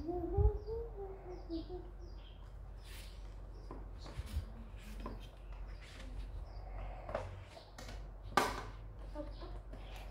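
A child's short laugh, then light clicks and knocks of small plastic toy pieces being picked up and set down on a table, with one louder clack about eight and a half seconds in.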